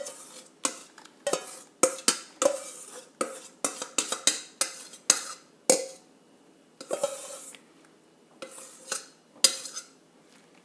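Metal spoon scraping and clinking against a stainless mesh strainer as blended banana and goat milk is pushed through it into the soap oils: a quick, uneven run of sharp clicks and scrapes, with a short lull past the middle.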